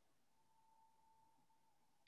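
Near silence, with only a very faint steady tone that stops shortly before the end.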